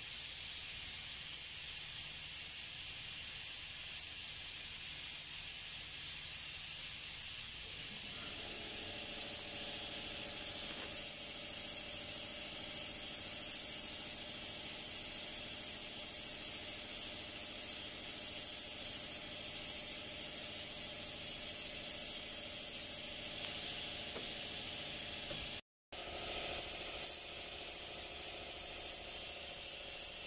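Steady hiss of compressed air and atomised paint from a gravity-feed spray gun spraying a car fender. A faint steady hum joins about eight seconds in, and the sound cuts out for a moment near the end.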